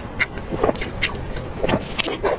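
Close-miked chewing of soft braised pork belly, with a string of wet smacking clicks, a few each second.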